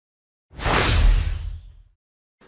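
A whoosh transition sound effect with a deep rumble under it. It starts sharply about half a second in and fades out over about a second and a half.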